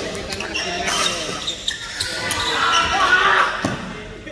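Badminton rally: several sharp strikes of rackets on a shuttlecock, ringing in a large hall, with players' voices calling during play.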